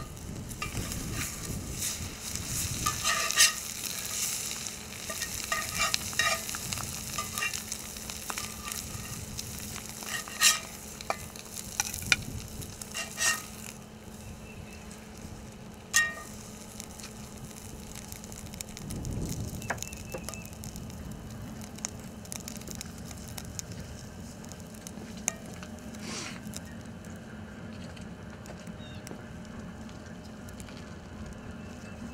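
Oil sizzling in a cast-iron skillet over a charcoal fire, with a metal spatula scraping and clinking against the pan several times, mostly in the first half.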